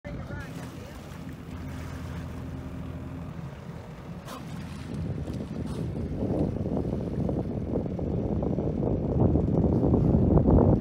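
A boat's motor runs with a low, steady hum. From about halfway through, wind buffets the microphone, a gusty rumble that grows louder.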